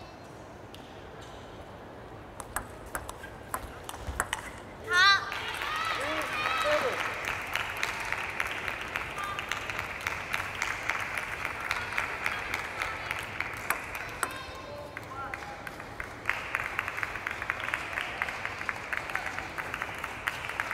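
Table tennis ball clicking off bats and table in a short rally, ending in a loud high shout about five seconds in as the point is won. Spectators then clap for several seconds, pause, and clap again near the end.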